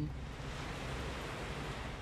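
Sea surf washing onto a beach: a steady rushing noise with no single breaker standing out.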